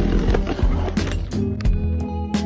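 Background music with a steady beat and a heavy bass.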